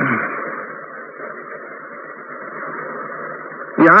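Steady, narrow-band hiss of a lo-fi lecture recording, like an old tape or radio broadcast, with a brief low falling sound at the start. A man's voice comes back in just before the end.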